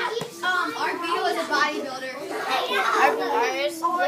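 Several children's voices talking and calling out over one another, with no single clear word.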